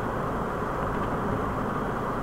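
Steady background rumble and hiss at an even level, with no distinct events.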